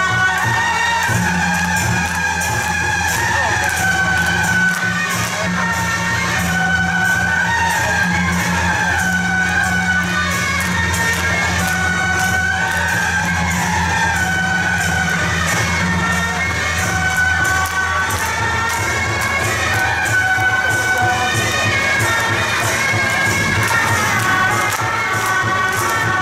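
Temple procession music, a wavering high melody over a steady low drone, with a crowd shouting and cheering.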